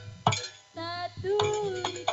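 Live janger ensemble music with kendang hand drums: a sharp drum stroke about a quarter second in, then a short lull. The music comes back in after about a second with a melodic line that slides in pitch and further drum strokes.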